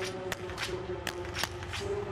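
Small-bore biathlon rifles firing on the range: about five sharp cracks from several shooters, irregularly spaced, over a faint steady background hum.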